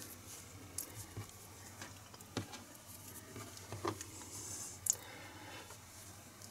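Faint handling sounds of a metal crochet hook working acrylic yarn into a slip stitch: soft rustling with a few light clicks scattered through.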